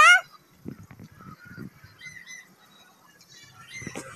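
A small child's brief, high-pitched squeal that rises in pitch, right at the start; after it, only faint scattered taps and a few soft chirps.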